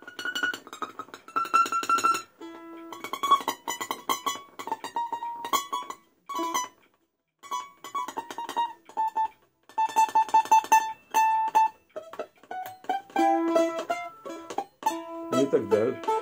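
Old balalaika from the Chernihiv factory, plucked with the fingers and no plectrum, picking out a melody in single notes. Some notes are stopped high up the neck past the frets. There is a short break about seven seconds in and a quick run of repeated notes a few seconds later.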